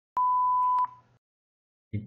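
A single electronic beep: one steady pure tone lasting about two-thirds of a second, with a click as it starts and as it ends.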